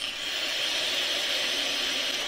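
Two people drawing hard on sub-ohm vape tanks at once: a steady hiss of air pulled through the tanks' airflow and coils.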